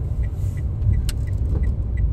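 Steady low rumble of a car's engine and tyres heard from inside the cabin while driving, with one short click about a second in.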